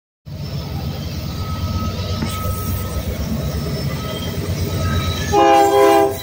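Union Pacific diesel freight locomotives approaching with a steady low engine rumble; about five seconds in, a short blast of the locomotive's air horn, a chord of several tones and the loudest sound.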